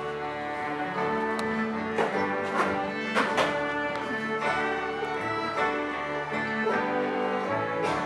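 A live acoustic band of fiddle, cello and banjo plays instrumental music, with held bowed notes, chords changing every second or so, and a few sharp plucked attacks.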